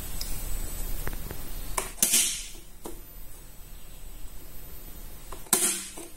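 A manual four-pole bypass changeover switch in a distribution box being thrown by hand to move the house supply onto inverter backup power: two sharp snaps about three and a half seconds apart, with a few faint ticks before the first.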